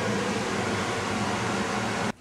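Steady fan-like mechanical whooshing with a low hum, unchanging throughout.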